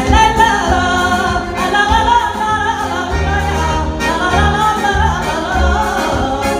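A woman sings a Portuguese popular folk song (moda) over a microphone, her voice wavering and gliding, with an accordion accompanying her over a pulsing bass beat.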